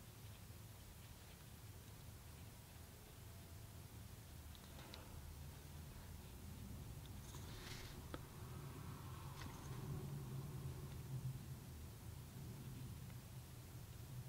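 Quiet room tone with a steady low hum, and a few faint brushing sounds, about five seconds in and again around eight and nine seconds, as a large flat watercolour brush drags a wet wash across paper.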